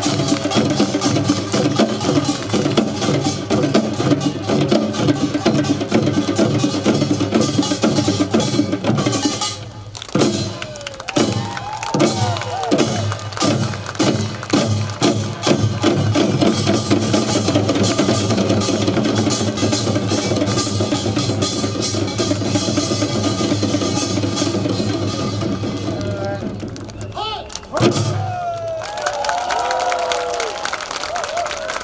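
Ensemble of Korean barrel drums (buk) beaten in a fast, dense rhythm over a steady sustained accompaniment. About ten seconds in it thins to separate heavy strokes, then builds again. There is a brief break near the end, then voices call out.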